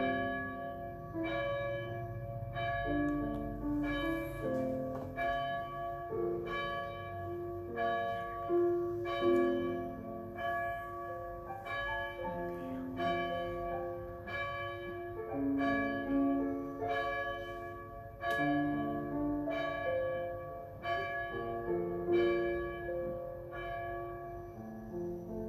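Bells playing a slow melody as prelude music, about one struck note a second, each note ringing on into the next.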